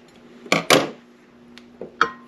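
Two quick, hard knocks about half a second in, from a cut piece of wax taper candle being handled against a plastic can of shortening and the work surface, over a faint steady hum.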